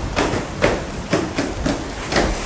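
A run of sharp, irregular knocks and bumps, about five in two seconds, as of wooden classroom desks and benches being knocked.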